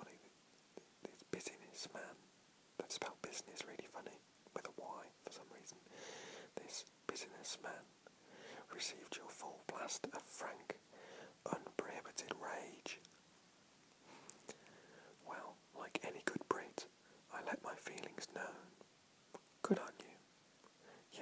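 Whispered speech: a man reading aloud in a close whisper, with hissy consonants and short pauses between phrases.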